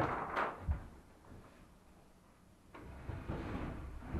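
Cedar plywood folding platform being handled and swung down: wooden rubbing with a short knock just under a second in, a quiet pause, then a rising scraping noise near the end as the panel comes down.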